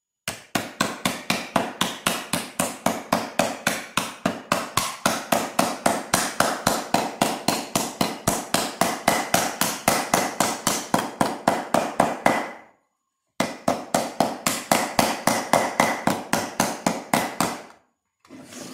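Rapid, steady hammer blows, about four a second, from a round-faced metal hammer sinking a tin pear cutout into a carved hollow in a beech block. The blows stop briefly about two-thirds of the way through, then resume.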